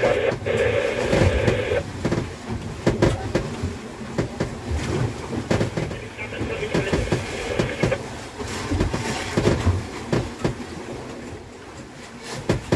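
Irregular knocks and clatter of crushed ice and freshly caught tuna being packed by hand into an ice-filled fish box on a wooden outrigger boat.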